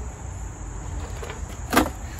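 Small knife slicing a ripe fig on a plate, with one short sharp knock of the blade against the plate near the end. Crickets chirr steadily underneath, over a low rumble.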